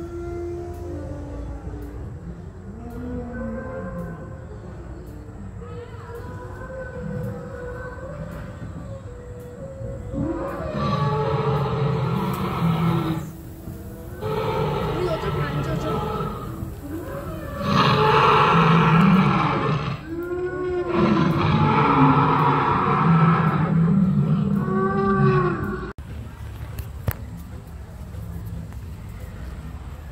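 Recorded dinosaur roars and growls played from an animatronic Spinosaurus: lower growling calls at first, then four long, loud roars from about ten seconds in, the pitch sliding down at the end of the last ones.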